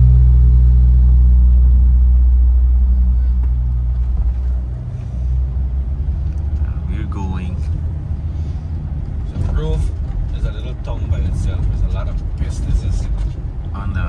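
Car engine and road rumble heard from inside the car. A steady low hum for the first four or five seconds changes to a rougher rumble as the car drives on, with faint voices now and then.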